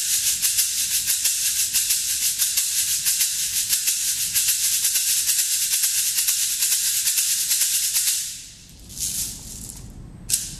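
Meinl SH-7 fiberglass shaker played in a steady rhythm, a bright, crisp bead rattle. The playing stops about eight seconds in, and one more short shake follows about a second later.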